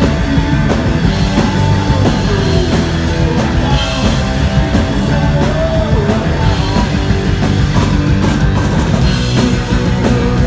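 Live punk rock band playing loud and steady: electric guitars, bass guitar and a drum kit.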